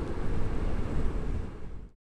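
Wind buffeting the microphone of a side-mounted helmet camera on a moving motorcycle, a steady, mostly low rumbling noise that fades and cuts off abruptly near the end.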